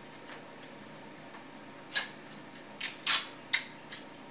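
Clear adhesive tape pulled from a roll and torn: a few faint ticks, then a quick run of short, sharp rips and snaps in the second half, the loudest and longest about three seconds in.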